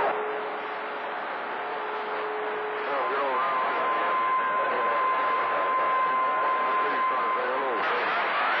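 CB radio receiving long-distance skip on channel 28: band-limited static hiss with a steady heterodyne whistle, low for the first three seconds, then higher until near the end. Faint, garbled voices come through the noise.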